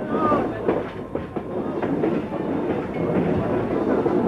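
Railway carriage wheels clattering over rail joints and points as a steam-hauled passenger train runs through station trackwork, heard from an open carriage window, with scattered sharp clicks over a steady rumble.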